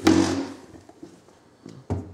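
Handling noise from a camera being set down: a short rustle at the start, then a single sharp thump just before the end.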